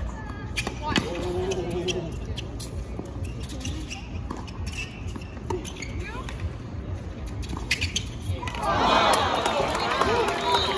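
Tennis rally: sharp racket hits and ball bounces on the hard court over crowd murmur and voices. Near the end the crowd breaks into loud cheering as the point finishes.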